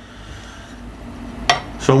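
A single sharp clack about one and a half seconds in, as a long straightedge used as a sanding beam is set down across a guitar's frets, over faint room hum.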